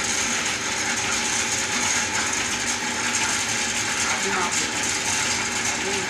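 Lathe running steadily while its boring tool cuts into the inside of a turning tamarind-wood block, a continuous mechanical whirring of the drive with the noise of the cut.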